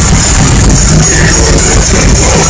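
Melodic death metal band playing live: distorted electric guitars and drums, loud and constant, overloading a phone's microphone.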